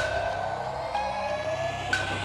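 Synthesized sound effect in the opening of a backing track: a steady high tone under a slowly rising, siren-like tone. It restarts with a sharp click about every two seconds.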